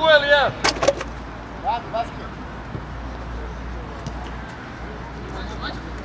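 Two sharp knocks a little under a second in, a football being kicked, over a steady low rumble of outdoor background noise.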